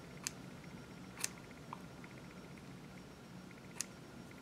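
Three short, sharp snips of hair-cutting scissors trimming synthetic wig bangs, spaced a second or more apart.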